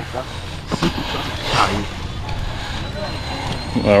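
Distant voices over a steady low rumble of open-air background noise, with a faint thin high tone coming in about halfway through.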